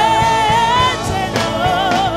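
Live gospel worship music: a drum kit with cymbals keeps a steady beat under a sung melody. A long held note near the start ends about a second in, and a wavering line follows.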